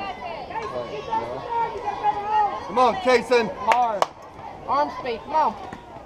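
Overlapping voices of players and spectators calling out and chattering across a softball field, with long drawn-out calls a few seconds in. Two sharp clicks come close together about four seconds in.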